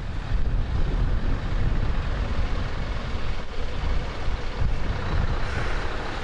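Diesel engines of articulated lorries running as they pull slowly past, a steady deep rumble with tyre noise on wet tarmac and wind on the microphone.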